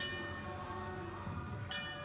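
Metal temple bell struck twice, about a second and a half apart, each strike ringing on.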